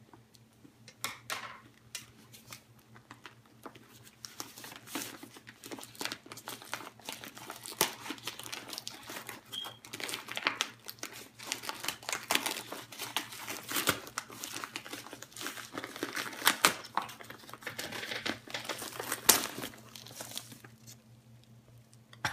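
A plastic mail bag crinkling and tearing as it is cut with scissors and pulled open by hand. It is a rapid, irregular run of crackles, sparse at first, then busier for most of the time, and easing off near the end.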